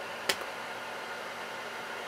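A single key click on the Toshiba T1000SE laptop's keyboard about a third of a second in, over a steady background hiss.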